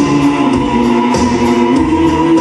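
Live band music from an outdoor stage: a pop-chanson song with electric guitar and keyboards, sustained choir-like vocal tones and a steady beat.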